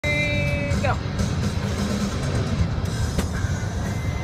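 Steady low road rumble inside a moving van's cabin. A short pitched sound comes about a second in, and a sharp click about three seconds in.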